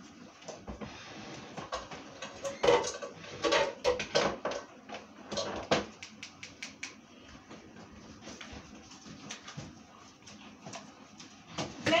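Kitchen clatter of disposable aluminium foil pans and utensils being handled and moved about: an irregular run of sharp clicks and knocks, busiest in the first half and sparser towards the end.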